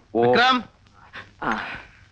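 A man's voice: a short spoken phrase at the start, then a second brief, breathy utterance about one and a half seconds in.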